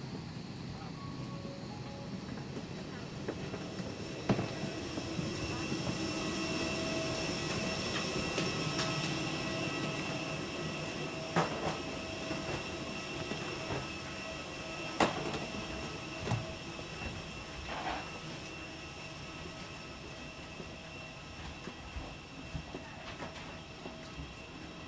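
Steady whine and hum from a parked airliner's running machinery, heard while walking off the aircraft. It grows louder in the middle, around the passage from the cabin door into the jet bridge, and a few sharp knocks break through it.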